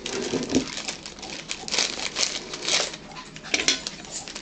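Plastic cracker sleeve crinkling and crackling as it is handled, a rapid run of small crackles.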